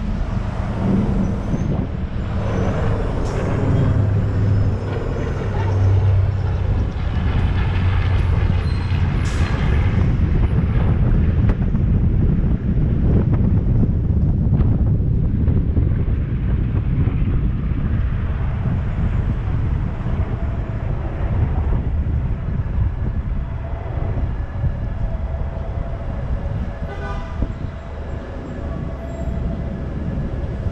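City street traffic heard from a moving car: a steady low rumble of engines and road noise, with a city bus running close alongside at the start and a brief higher-pitched tone near the end.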